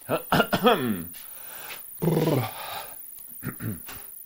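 A very high-pitched whine like a frantic chirping cricket, an unwanted noise in the recording's audio that the host himself cannot hear, runs under a man's voice. The voice makes two long wordless sounds that fall in pitch, one at the start and one about two seconds in.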